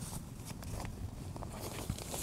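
Faint rustling and small ticks of nylon TPU inflatable sleeping-pad fabric being handled while the connection buttons joining two pads are fastened, over a low steady rumble.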